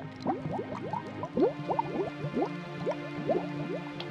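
Underwater bubbling sound effect: a stream of short bubble blips, each rising in pitch, several a second, over a held music drone.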